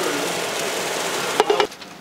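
Ground meat sizzling in a frying pan, a steady hiss, with a few sharp clicks about one and a half seconds in before the sound cuts off suddenly.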